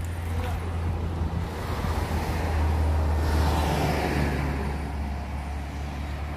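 A car passing by on the road: its engine and tyre noise swells to a peak about halfway through, then fades, over a steady low rumble.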